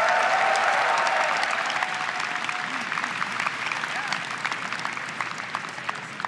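A large auditorium audience applauding, the clapping loudest at the start and slowly fading, with a few voices cheering near the start.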